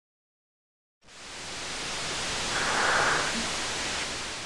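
A rushing noise swell from an intro sound effect: silence for about a second, then a hiss-like rush that builds, is loudest about two seconds after it starts, and begins to fade.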